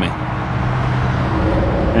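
A vehicle engine idling: a steady, even low hum over a wash of outdoor noise.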